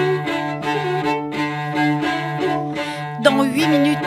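Solo cello bowing a low note held steadily underneath, with short repeated bow strokes above it about three times a second; sliding notes come in near the end.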